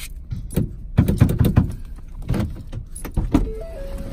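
Irregular knocks and rattles around a car over a steady low rumble, with a tune of held notes starting near the end.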